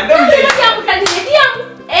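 A person clapping their hands: two sharp claps about half a second apart, amid animated talking.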